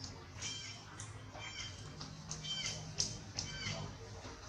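Newborn long-tailed macaque crying in a string of short, high-pitched squeaks, about seven in four seconds, the loudest about three seconds in.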